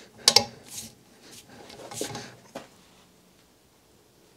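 A few sharp metallic clicks and scrapes, the loudest about a quarter second in, as a hand tool is set into and turns the bedknife screws on a Toro DPA cutting unit's bedbar, the screws coming loose.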